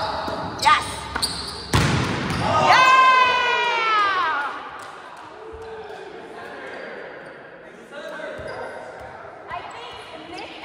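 Volleyball being struck twice in a large gym, the second hit sharper, followed by a player's long high-pitched shout that falls in pitch as it ends, then scattered voices echoing in the hall.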